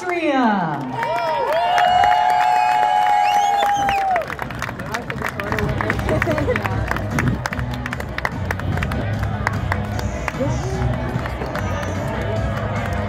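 Music on a stadium's loudspeakers with a crowd clapping and cheering along. Long held notes fill about the first four seconds, then steady clapping runs over the music.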